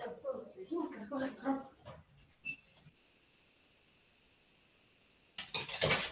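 An indistinct voice comes over the video-call audio for about two seconds, followed by a few clicks. The line then drops to dead silence, and a loud burst of noise breaks in near the end.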